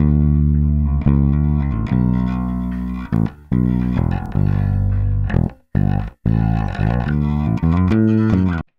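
Recorded bass guitar line played back with Melodyne's Brilliance macro turned up, brightening its upper overtones. The note line breaks off briefly a few times.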